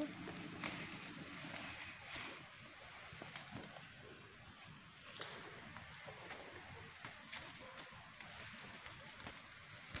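Faint, steady rush of a flowing river, with light rustles of leaves being plucked from a shrub by hand.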